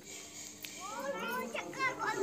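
Children's voices in the background: a few high-pitched, rising calls and squeals starting about a second in.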